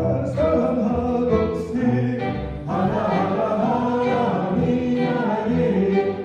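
Folk orchestra playing an Armenian folk dance tune in a klezmer arrangement, with bowed violins carrying sustained melody notes over double bass and bassoon. The music keeps going without a break, with a new phrase beginning about halfway through.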